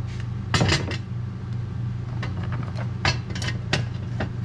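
A black plastic part knocking and clattering against a diamond-plate aluminium box as it is pushed into place: a cluster of knocks just under a second in, then a few single knocks near the end. A steady low hum runs underneath.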